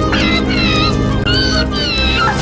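High-pitched squealing cries of a swarm of small animated bugs as they scatter, about four short wavering squeals in a row. Under them plays a steady orchestral film score.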